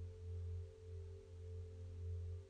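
Soft ambient meditation music: a low sustained drone that gently swells and fades, with faint higher held tones above it.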